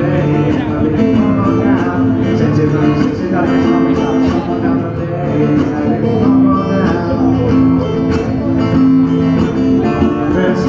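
Solo acoustic guitar played live through PA speakers, strummed in a steady rhythm.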